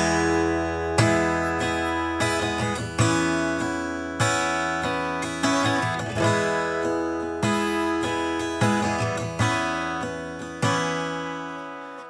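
Acoustic guitar strumming chords, about one strum a second, each chord left to ring and fade before the next.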